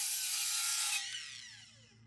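Ryobi sliding miter saw running at full speed for about a second, then winding down: its whine falls steadily in pitch and fades as the blade spins to a stop after the trigger is released.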